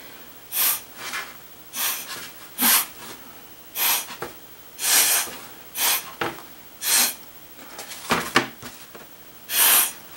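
Short puffs of breath blown through a drinking straw, pushing wet watercolour paint across the paper. Each puff is a brief hiss, coming roughly once a second, and the last one, near the end, is the longest and loudest.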